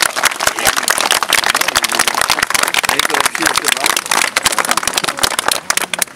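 Applause from a seated crowd of children: dense, rapid clapping with voices faintly underneath.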